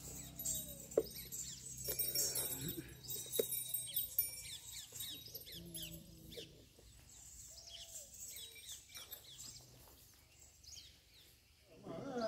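Birds chirping and calling, many short high notes sweeping downward, faint, with a low hum under them that fades out in the second half.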